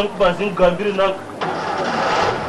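A voice speaks briefly, then about one and a half seconds in an engine sound starts up with a steady low hum.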